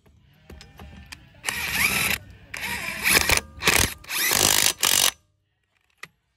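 DeWalt DCF891 20V XR 1/2-inch cordless impact wrench hammering on a truck wheel's lug nuts in five bursts of up to about a second, after a second or so of light clicks. The nuts come loose easily.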